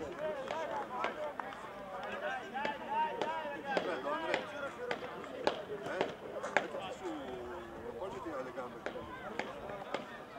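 Several voices talking and calling at once, overlapping and indistinct, with a few sharp clicks scattered among them.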